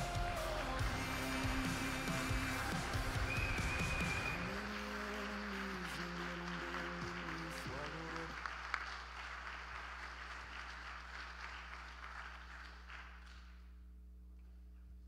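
Congregation applauding while the last held notes of a song's music ring out and stop about eight seconds in; the applause thins and fades out near the end.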